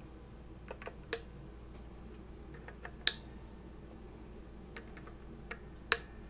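Cruz Tools string clippers snipping the excess ends of new electric guitar strings at the headstock: three sharp snips, about a second in, about three seconds in and near the end, with a few faint ticks between.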